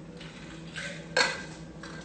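A few short, sharp knocks and clinks of hard objects, irregularly spaced, the loudest a little past the middle, over a faint steady hum.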